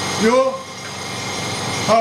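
Brief conversational speech: two short spoken words, one near the start and one near the end, over a steady background noise.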